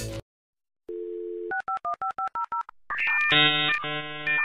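Telephone sound effect: music cuts off, and after a short silence a steady dial tone plays. It is followed by a quick run of about eight touch-tone (DTMF) dialing beeps, then a harsh buzzing electronic tone near the end, like a dial-up modem starting its connection.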